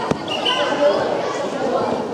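Sounds of a wrestling bout: a sharp thud on the mat just after the start, then a short, steady, high referee's whistle blast, with voices shouting over the hall.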